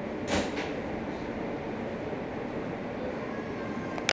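Steady interior noise of an R160 subway car, with two short, loud bursts of noise about a third and half a second in.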